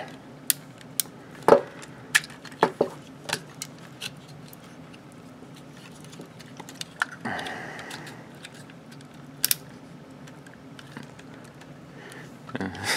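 Plastic parts of a transforming robot action figure clicking and knocking as they are folded and pushed into place by hand: a series of sharp separate clicks, the loudest about one and a half seconds in. A short scraping rustle of parts sliding against each other comes a little past the middle.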